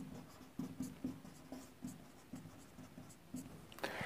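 Marker pen writing on a whiteboard: a series of short, faint strokes that stop about three and a half seconds in.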